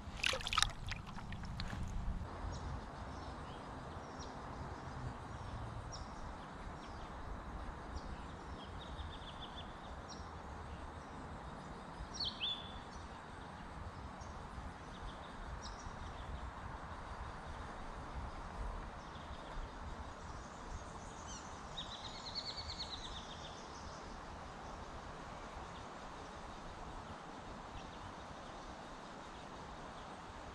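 A small splash and water slosh as a fish is let go into shallow river water just after the start, then steady riverside ambience with birds calling: scattered short high chirps, a quick falling call about twelve seconds in, and a longer warbling call a little past twenty seconds.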